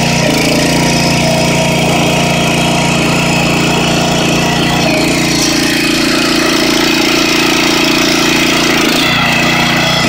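Predator 212cc single-cylinder four-stroke engine (a Honda GX200 clone) running steadily a little above idle while it drives the log splitter's hydraulic pump. Its tone shifts slightly a few times, with a brief dip in pitch about nine seconds in.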